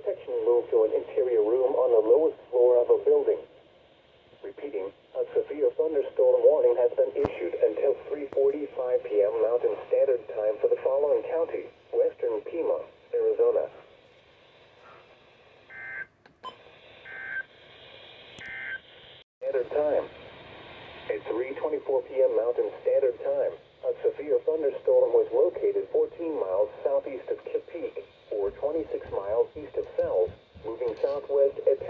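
A voice reading the weather broadcast through a Midland NOAA weather radio's small speaker, sounding narrow and tinny. About halfway through the voice stops for a few seconds, and several short electronic tones sound before it resumes.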